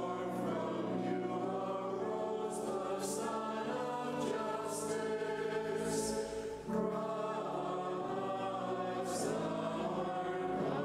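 Church choir singing a communion hymn in held, chordal phrases, with a short break between phrases about two-thirds of the way through.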